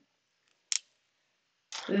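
A single short plastic click, a felt marker's cap being snapped on, with quiet either side; a woman's voice starts near the end.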